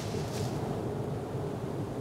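Steady low rushing of wind on the microphone, an even noise without distinct events.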